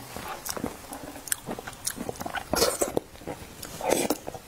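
Close-miked eating of milk-tea-soaked calcium milk biscuits: a plastic spoon scooping the soft mush from a glass bowl with small clicks, then wet mouth sounds as a spoonful is taken and chewed. A louder wet burst comes about two and a half seconds in.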